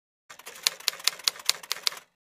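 Typewriter keys clacking as a sound effect: a quick, even run of strikes, about five a second with fainter clicks between. It starts just after the beginning and cuts off suddenly at the end.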